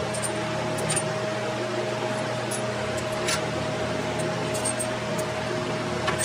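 A steady mechanical hum with one constant tone, like a fan running in a small garage. A few light metallic clicks come over it at irregular moments, as steel bolts and washers are handled and dropped into holes in the table.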